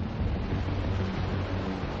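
Big ocean surf breaking and washing in, a steady rushing noise. A low, sustained music drone runs underneath.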